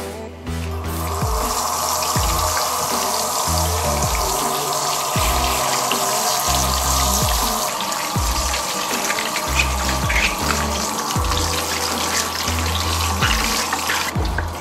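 Tap water running into a glass bowl of green ume plums as hands wash them, starting about half a second in. Background music with a rhythmic bass beat plays throughout.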